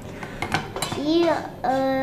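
A few short clinks of dishes and cutlery in the first second, then a voice starts speaking.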